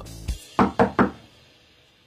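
Three quick knocks on a door, about a fifth of a second apart, just after background music cuts off.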